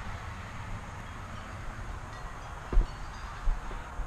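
Steady low outdoor rumble with no clear source, and two soft bumps in the second half as the handheld camera is swung round toward the porch.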